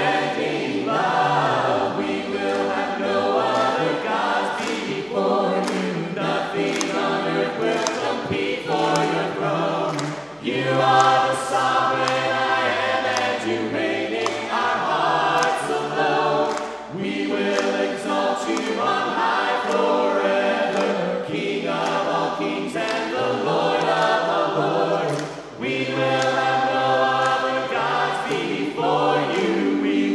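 A cappella worship singing by a mixed group of men's and women's voices in harmony, in long sung phrases with brief breaks between them.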